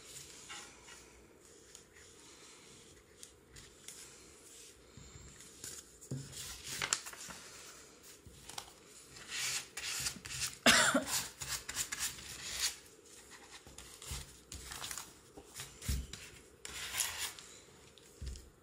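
Paper pages being handled, rubbed and pressed flat by hand on a table: irregular rustling with light taps and knocks.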